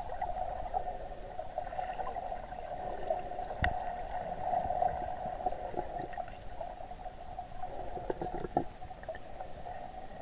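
Muffled underwater sound picked up by a submerged camera in the sea: a steady wash of moving water, with a sharp click about four seconds in and a few more near the end.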